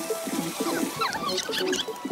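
A dense chorus of animal calls: many short, quickly repeated low calls overlapping, with higher chirps sweeping above them.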